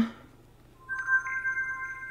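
Samsung Galaxy S4 smartphone playing its unlock chime: a soft electronic chord of a few steady tones that comes in about a second in and lingers.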